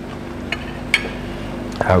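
A fork clinking lightly on a breakfast plate, a faint tick and then one sharper clink about a second in, over a steady low hum of room tone.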